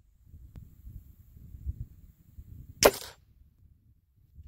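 A single sharp air rifle shot, a pellet fired into a bare ballistic gel block, about three seconds in, with a short ring-out after the crack. A faint tick comes just after the start, over a low rumble.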